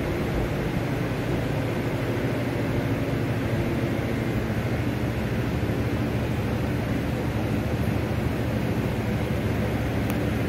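Steady machine hum with an even rushing noise underneath, unchanging throughout.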